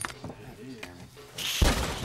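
A door bursting open: a sudden heavy bang and crash about a second and a half in, following low murmured talk.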